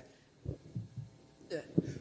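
A few soft, low thumps from a handheld microphone being handled and raised toward the mouth, over a faint hum, followed by a single short word near the end.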